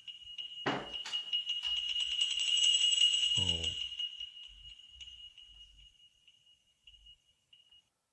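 A horror film's sound design: after a sharp hit about a second in, a steady high-pitched ringing tone with a shimmering, jingling haze swells up and then slowly fades away. A brief low sound breaks in about halfway through.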